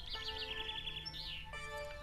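Small birds chirping: a quick run of repeated chirps, then a held high note and a short falling call, over steady held tones of background music.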